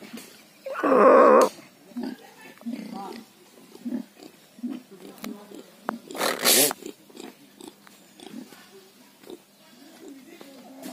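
Domestic pigs grunting in short, repeated low grunts while rooting and feeding. There is a loud pitched call about a second in and a short harsh squeal around six seconds in.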